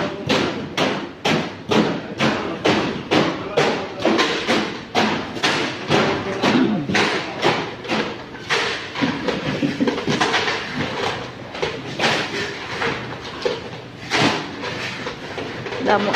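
A cleaver chopping fish on a block: fast, regular knocks, about three a second, that fade for a few seconds in the middle and pick up again near the end, over market chatter.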